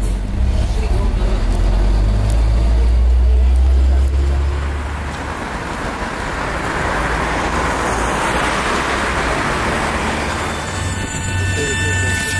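Road traffic: a deep engine rumble for the first few seconds, then a vehicle passing with its noise swelling to a peak about eight seconds in and fading. A steady high whine joins near the end.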